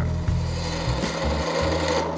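Skewchigouge, a hybrid skew chisel and spindle gouge, cutting a spinning wooden spindle on a lathe with the bevel down. It makes a steady hiss as the edge shears off shavings.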